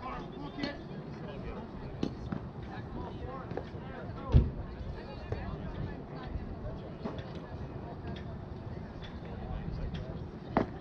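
Scattered distant voices of players and spectators chattering, with one sudden loud thump a little over four seconds in.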